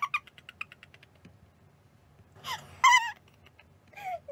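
A woman laughing: a high-pitched burst that breaks into a quick run of short pulses of laughter, then after a quieter stretch another loud, high squealing laugh about three seconds in.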